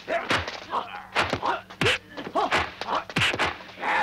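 Kung fu film fight sound effects: a rapid series of dubbed punch and kick impacts, mixed with the fighters' short shouts and yells.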